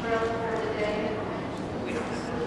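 Indistinct children's voices speaking in a large hall, with no clear words.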